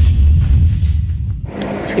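A deep, rumbling boom sound effect under an edited title card, dying away over about a second and a half. Near the end it cuts to open-air road ambience with a low steady hum.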